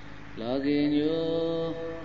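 A Buddhist monk's voice chanting one long, steadily held phrase that starts with a short rise in pitch about half a second in.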